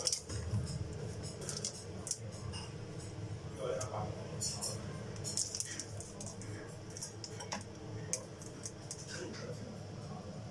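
Scattered light clicks and scrapes of a live spiny lobster's shell and legs and wooden chopsticks on a stainless steel sink, over a low steady hum.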